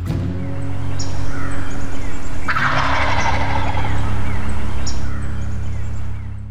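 A wild turkey gobbling once, starting suddenly about two and a half seconds in, over steady low outro music that begins to fade near the end.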